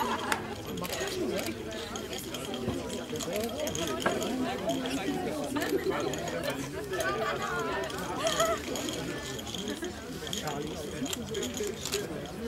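Background chatter of several people talking at once, with no single clear voice and a few sharp clicks.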